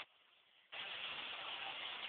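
A steady noisy din like a hiss, with no distinct events. It drops to near silence for the first moment and comes back at full level about 0.7 s in.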